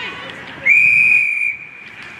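Umpire's whistle blown in one steady, shrill blast of under a second, starting about two-thirds of a second in and leaving a short fading tail.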